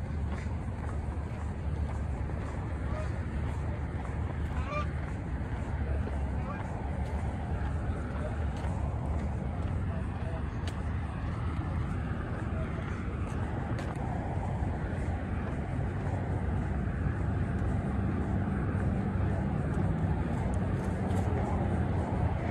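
Steady outdoor rumble of distant road traffic, with a few faint short calls or honks in the first half.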